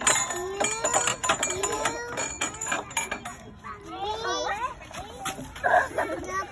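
A young child's voice talking and calling out in high-pitched, unclear words, with several sharp clicks or taps in the first half.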